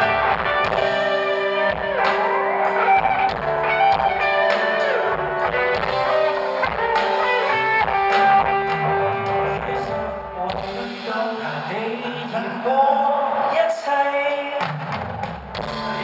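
Live rock band playing: electric guitars over a drum kit with regular drum hits. A man's voice comes in over the band in the last few seconds.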